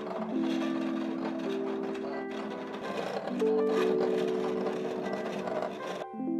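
Background music of held, slowly changing chords over the mechanical running noise of a Silhouette Portrait 2 cutting machine cutting a sticker sheet.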